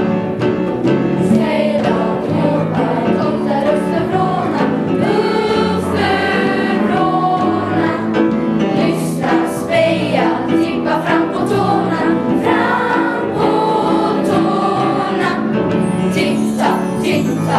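School choir singing, with held notes and no breaks.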